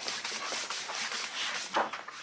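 A hand rubbing across a tabletop: a steady, scratchy rubbing with one brief louder scrape near the end.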